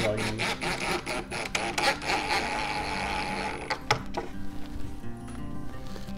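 Cordless impact driver on a low setting, hammering a pocket screw into a pocket hole in a rapid rattle for about three and a half seconds, then stopping, followed by a couple of clicks. The screw is only being snugged down, not driven hard, to avoid splitting the apron.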